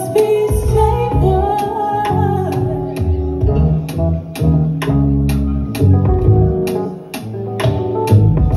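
Live band music: a woman singing into a microphone over electric guitar, keyboard, a bass line and drums with a steady beat.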